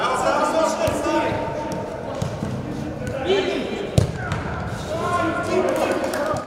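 Indoor football match sound: several players' voices calling out across a large echoing hall, with the thuds of the ball being kicked and one sharp ball strike about four seconds in.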